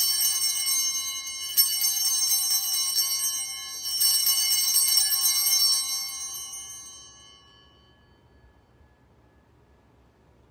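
Altar bells rung at the elevation of the chalice during the consecration. There are three peals, about two seconds apart, each a bright cluster of high ringing tones, and the ringing fades away about seven seconds in.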